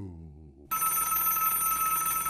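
Telephone ringing with an electronic trill that starts about two-thirds of a second in and holds steady, signalling that a call-in listener is being put through on air.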